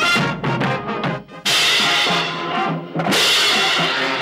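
Pep band percussion playing: bass drum strokes under the band, then a pair of crash cymbals struck twice, about a second and a half in and again near the three-second mark, each crash ringing on.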